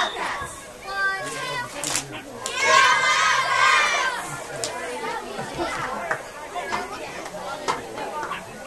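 Children's voices shouting and calling out in the open air. Many voices yell together for about a second and a half around the middle, then drop back to scattered talk.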